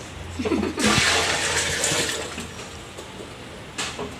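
Water poured out of a steel bowl, a rush of splashing that starts about a second in and tapers off over about two seconds.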